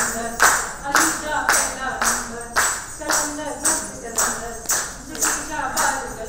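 Steady rhythmic hand-clapping, about two claps a second, keeping time under a woman's singing.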